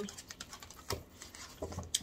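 A deck of tarot cards being shuffled by hand: a run of quick, light card clicks and flicks, with a louder snap about a second in and another just before the end.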